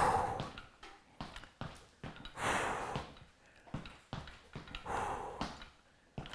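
A man breathing hard under exertion during a seated weighted knee-raise exercise: three heavy exhales about two and a half seconds apart, with light taps in between.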